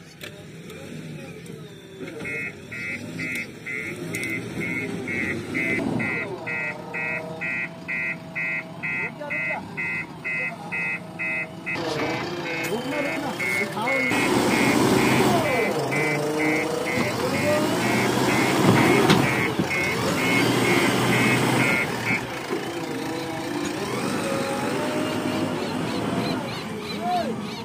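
JCB backhoe loader's reversing alarm beeping about twice a second over its running diesel engine; the engine gets louder about halfway through as the machine works, and the beeping stops a few seconds before the end.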